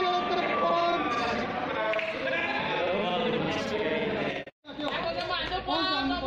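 People's voices, some held in long, wavering tones. The sound cuts out suddenly for a moment about four and a half seconds in, then voices resume.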